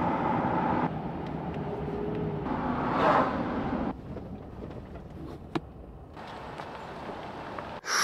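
Road and engine rumble heard from inside a moving vehicle's cabin, steady and low, with a single sharp click about five and a half seconds in.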